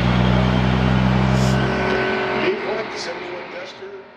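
A car engine running loud and steady, starting abruptly, then fading away over the last two seconds, with a voice and a few short clicks as it fades.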